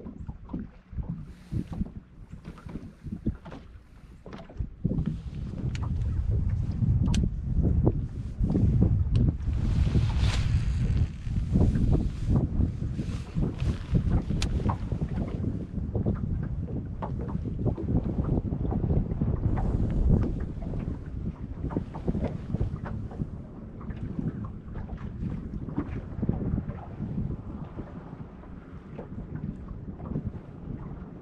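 Wind buffeting the microphone in gusts, heavier from about five seconds in and easing near the end, with scattered small clicks and knocks.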